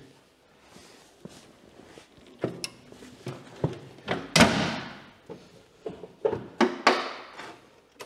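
Scattered metal knocks and thunks as a person opens the door and climbs into the steel cab of a homemade compact loader, the loudest a sharp bang a little over four seconds in.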